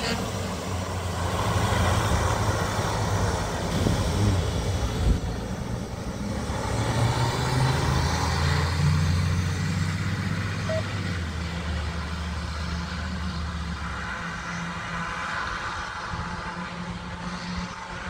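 Fire engine's diesel engine running as the truck pulls away and drives off down the road. Its low rumble drops off about fourteen seconds in.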